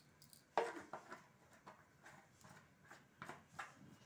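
Faint, irregular crackling and ticking from cooking oil just poured into a hot kadhai on a gas stove, the first crackle about half a second in.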